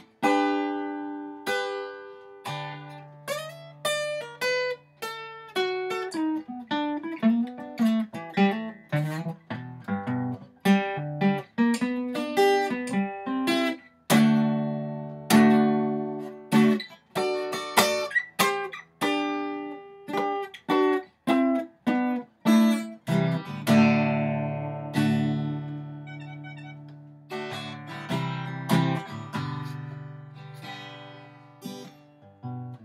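Solo acoustic guitar playing an instrumental lead: a quick run of single picked notes, each ringing out, over held bass notes, with no singing.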